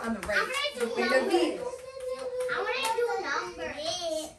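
Young children's voices, talking and calling out over one another, with one voice holding a long steady note in the middle.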